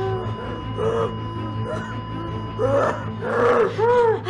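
A TV drama's soundtrack: background music with steady held tones under a person's breathy, broken vocal sounds, which grow louder about three seconds in.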